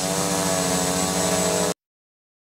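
OFM Hoist-700 quadcopter hovering, its four electric motors and propellers making a steady drone of several tones that waver slightly in pitch. The sound cuts off abruptly near the end.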